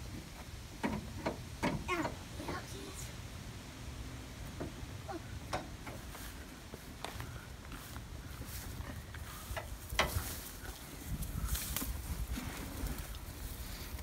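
Occasional short clicks and knocks from the control levers of a dead John Deere 450C crawler dozer being pushed and pulled, the engine silent, over a low steady rumble.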